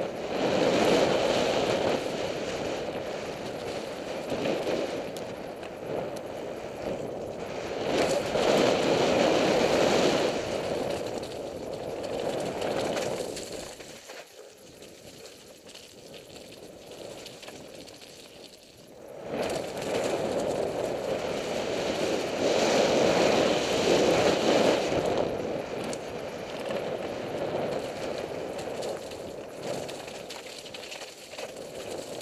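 Mountain bike ride noise heard from a helmet camera: tyres on a rough dirt trail, the bike rattling, and wind on the microphone. It drops to a quieter stretch about halfway through, then rises again.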